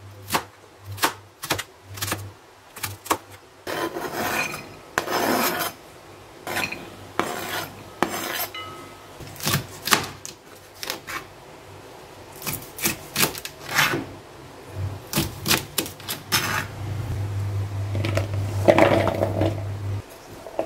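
A chef's knife chopping carrot and then green beans on a cutting board: runs of sharp taps on the board, with stretches of rubbing and scraping in between as the pieces are handled and pushed across the board.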